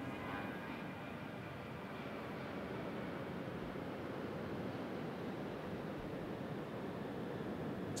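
Jet aircraft passing over an airport: a steady rushing noise with a faint high whine in the first couple of seconds, swelling slightly midway.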